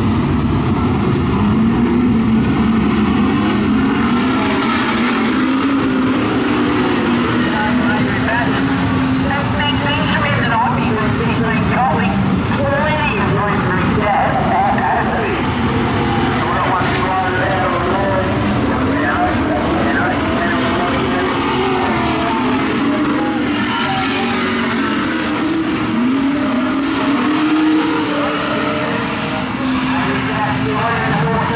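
A pack of AMCA dirt-track speedway cars running together on the track at moderate revs, several engine notes overlapping and rising and falling as they circle.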